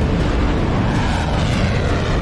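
An aircraft engine running steadily: a loud, continuous low hum with a rushing noise over it, holding even throughout.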